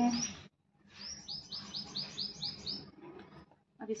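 A small bird chirping: a quick, even run of about eight short, high notes, each dropping in pitch, starting about a second in and lasting about two seconds.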